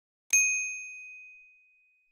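A single bright ding from a notification-bell sound effect, struck about a third of a second in and ringing down over about a second and a half, marking the click on the bell in an animated subscribe button.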